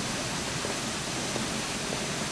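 A steady, even rushing hiss with no distinct events.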